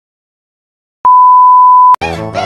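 Silence, then about a second in a single loud electronic beep: one steady, pure, high tone, the censor-bleep kind, held for just under a second and cut off abruptly.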